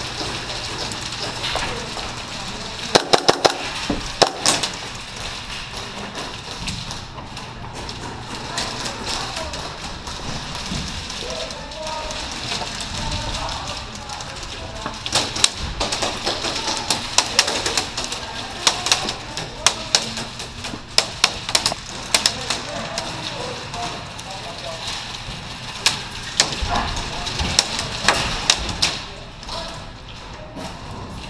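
Airsoft gunfire in strings of rapid sharp cracks: a short burst about three seconds in, a longer run of shots in the middle, and a few more near the end. Indistinct voices murmur underneath.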